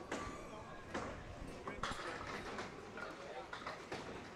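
Candlepin bowling alley sounds: a few sharp knocks of the small wooden balls and pins over a low clatter of the lanes and the ball return.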